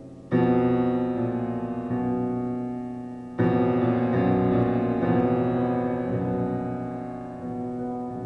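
Solo grand piano playing: a loud chord struck just after the start and another about three seconds later, each ringing on and slowly fading under quieter notes.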